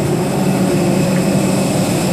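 Steady low drone with an even hiss from a parked airliner's running machinery, heard from the jet bridge at the boarding door.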